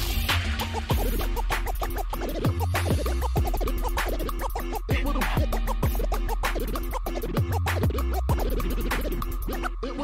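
DJ scratching a record on a turntable over a hip hop beat with heavy bass: many quick back-and-forth pitch swoops cut across the steady beat, with a short break just before the end.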